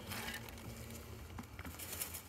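A hand rummaging among shelled peanuts in a glass jar: faint rustling at first, then a few light clicks.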